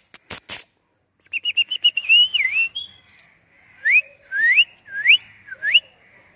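Whistling: a few short sharp noises at the start, a pause, then a quick run of short high chirps, one longer whistle that dips and recovers, and four rising whistles in the second half.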